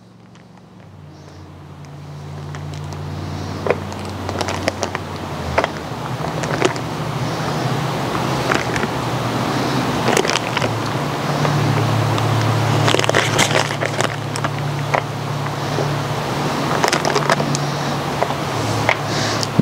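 Foil wrapper and a disposable aluminum foil pan crinkling and clicking in scattered sharp crackles as cheese is unwrapped and set into the pan, over a steady low hum that fades in over the first couple of seconds.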